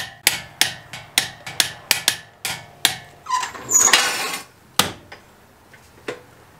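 Torque wrench tightening a lug nut on a wheel: a run of sharp metallic clicks, about three a second, then a longer scraping rattle about three seconds in and one last click.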